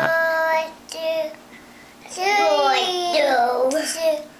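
Toddler singing in a high voice: a held note, a short note about a second in, then a longer phrase that slides up and down in pitch from about two seconds in.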